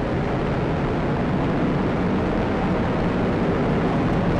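Atlas V rocket climbing after liftoff, its RD-180 first-stage engine and strap-on solid rocket boosters making a steady, deep rumbling noise.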